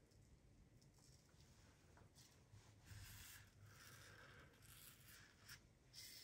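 Faint scraping of a 1950 Gillette Rocket Flare double-edge safety razor cutting stubble through shaving cream, a few short strokes in the second half.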